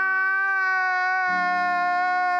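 A man wailing in one long cry held at a nearly steady pitch, with a lower tone joining a little past halfway.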